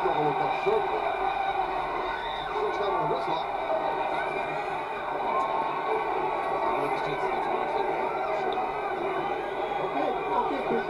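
Muffled speech and arena sound from a wrestling broadcast played back through a speaker and picked up by the room microphone, too indistinct to make out words.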